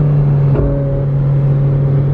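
Ferrari 458 Spider's 4.5-litre V8 running at steady, moderate revs while cruising slowly, a constant engine drone with no rise or fall in pitch.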